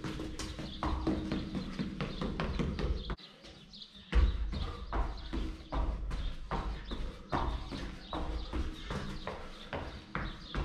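Quick footsteps of shoes striking a concrete floor during agility ladder drills: a rapid rhythm of foot strikes, about three a second, with a short pause about three seconds in.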